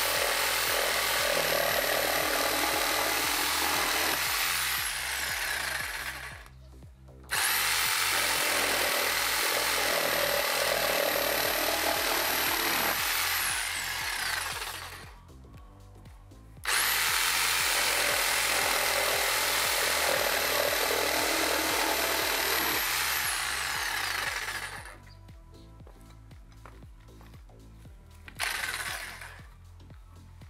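Hyundai HY-JS 100 750 W corded jigsaw cutting through a wooden board in three runs of about six seconds each. Each run ends with the motor winding down and a high whine falling in pitch. A short burst from the saw comes near the end.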